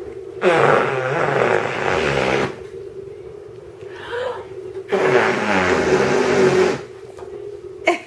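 Two buzzy bursts of about two seconds each, a few seconds apart, over a steady low hum: an adult playfully blowing raspberries at a baby.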